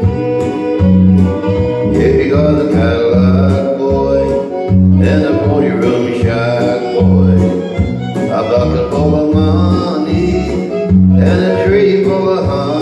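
Country karaoke backing track playing its instrumental intro: fiddle and guitar over a bass line bouncing between two notes on a steady beat.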